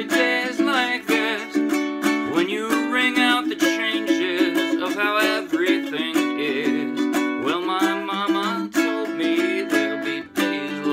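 Ukulele strummed in a steady rhythm while a man sings along.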